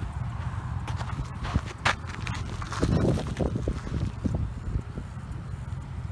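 Footsteps crunching irregularly on a sandy gravel road shoulder, over a steady low rumble.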